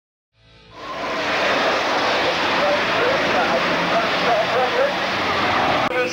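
A dense, noisy roar of stock cars racing, fading in over the first second, with wavering tones running through it.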